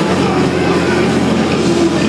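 Hardcore punk band playing live at full volume: a dense wall of heavily distorted electric guitar and bass, with a held low chord ringing under it.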